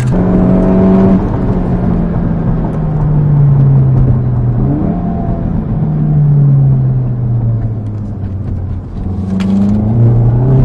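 2016 Volkswagen GTI's turbocharged four-cylinder engine, with a Cobb tune and an upgraded exhaust, heard from inside the cabin. Its note sinks slowly in pitch, steps up sharply about five seconds in, sinks again, and climbs once more near the end.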